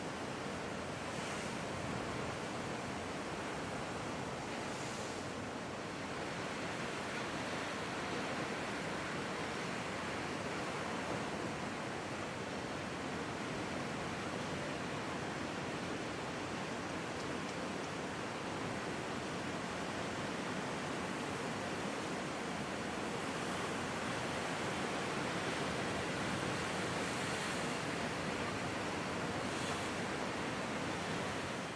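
Ocean surf: large waves breaking and washing in a steady, unbroken roar of noise.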